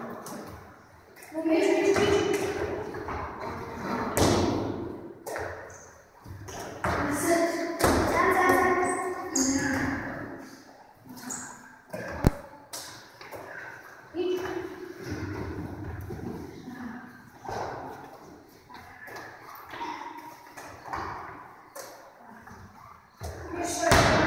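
Medicine balls thudding as they are thrown and caught in an echoing gym hall, with one sharp knock about halfway through the loudest, amid voices talking and calling.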